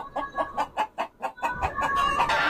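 Chicken clucking in a quick series of short pulses.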